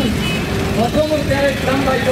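A man's voice over a loudspeaker in drawn-out phrases, above a steady background of crowd noise and a running vehicle engine.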